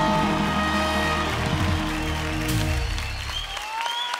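A live band's closing chord rings out under applause. The band stops about three and a half seconds in, and the clapping carries on.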